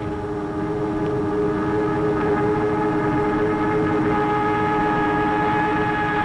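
A steady, held chord of several unchanging tones, horn- or siren-like, sounding through the whole stretch over a rough low rumble.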